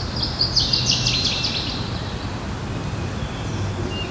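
A bird singing a quick run of high chirps in the first second and a half, then a few fainter calls near the end, over a steady outdoor background hiss.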